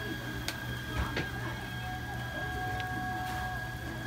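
A steady electrical hum with a thin, constant high whine, broken by a few sharp light clicks of utensils against the cast-iron bungeo-ppang mold.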